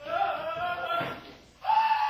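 A high-pitched voice holding two long cries, the first in the first second and the second starting near the end.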